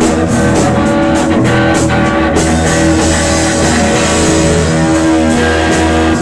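Live rock band playing loud and without a break: electric guitar over a drum kit.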